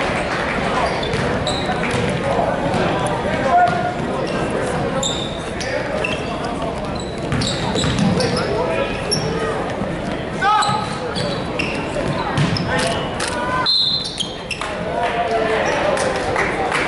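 Basketball game sound in a large echoing gym: many voices from players and spectators, a ball bouncing on the hardwood court, and short high squeaks of sneakers on the floor scattered throughout.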